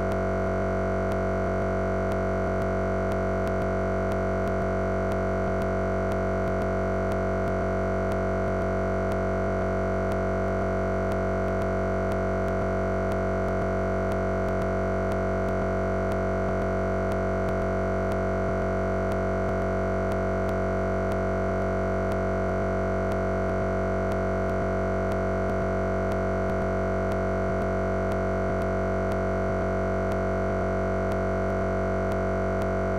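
A steady electronic drone of many fixed pitches, one middle tone louder than the rest, that does not change at all. It is the sound of stuck, looping digital audio in the broadcast feed.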